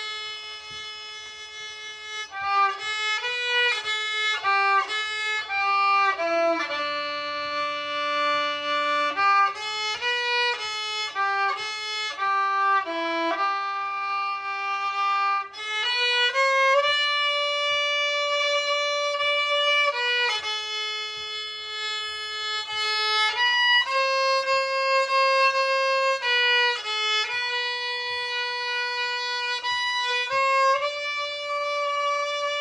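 Unaccompanied fiddle playing a tune, a single bowed melody line that moves between quick runs of short notes and long held notes.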